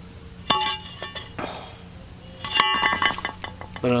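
Bent quarter-inch steel plate clinking and ringing as it is handled: one sharp metallic clink about half a second in, then a quick run of clinks with ringing tones about two and a half seconds in.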